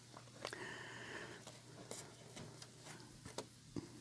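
Faint sliding and light flicks of football trading cards being shuffled from the back of a stack to the front, with a few soft clicks.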